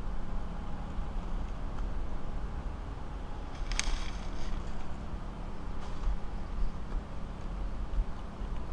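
A brief dry crackle about four seconds in as a dead Mexican fan palm frond is handled and tossed, over a steady low rumble.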